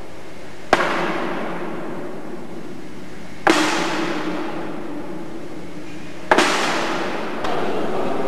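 Three sharp knocks about three seconds apart, each with a long echoing tail: thrown discs landing on a target board with holes and on the floor in a large, reverberant hall. A steady hiss runs underneath.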